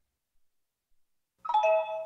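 Silence, then about one and a half seconds in, a short electronic chime of several bright tones rings for about half a second: the sonic logo of a tastytrade advert.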